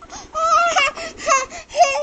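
Eight-month-old baby fussing in three short, high whining cries in a row.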